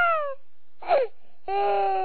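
Newborn baby crying: a wail that falls away at the start, a short falling squeal about a second in, then a long, steady cry from halfway through.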